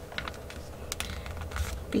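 Hands handling paper on a cutting mat: a few light scattered clicks and soft rustles as a glued paper piece is laid onto an envelope and pressed down, over a steady low hum.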